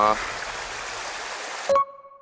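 Mountain stream water running steadily over rocks. About two-thirds of the way in it cuts off abruptly into a single ringing chime that fades out over about a second.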